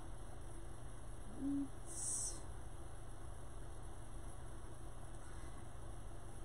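Quiet room tone with a steady low hum. A brief, low hum-like sound comes about one and a half seconds in, followed by a short hiss.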